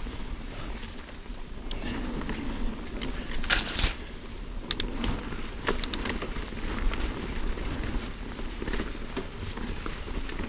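Mountain bike rolling fast down dry dirt singletrack: knobby tyres on dirt and leaf litter over a low rumble, with frequent clicks and rattles from the bike over roots and bumps, and a louder clatter about three and a half seconds in.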